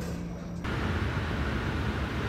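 Outdoor street background noise with a low rumble like distant traffic. About half a second in it changes abruptly to a brighter, louder hiss.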